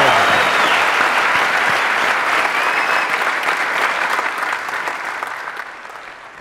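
Studio audience applauding, loud at first and dying away gradually toward the end.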